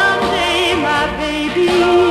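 A recorded pop song playing: singing with a wavering vibrato over a band accompaniment.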